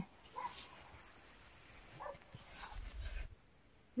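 A few faint, short animal calls, one about half a second in and another about two seconds in, over a quiet background, with a brief low rumble about three seconds in.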